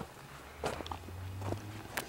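Footsteps on rocky, gravelly ground: a few soft, separate crunches.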